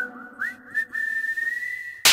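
Whistled melody of a film song: a few short upward-swooping notes, then one long high note held and rising slightly, over faint sustained backing.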